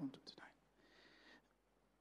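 Near silence, with a man's voice faintly murmuring a few words under his breath at the start, then a brief soft hiss about a second in.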